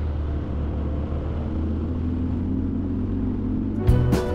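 Harley-Davidson Sport Glide's V-twin engine running steadily while riding, a low drone under road and wind noise.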